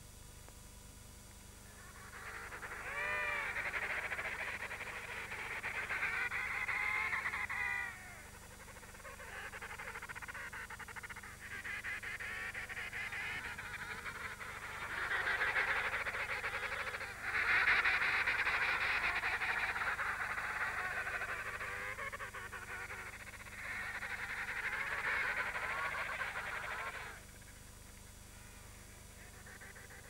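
Emperor penguins calling: about six long, warbling calls a few seconds each, separated by short pauses, the loudest and longest about halfway through.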